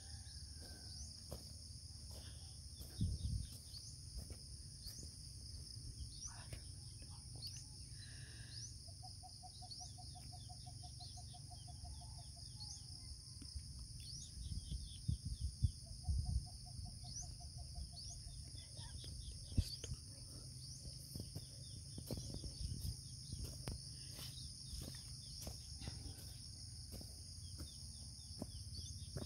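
Steady high-pitched chorus of insects such as crickets, with many short rising chirps over it. Two brief, lower pulsing trills come about ten and sixteen seconds in, over a low rumble and scattered knocks.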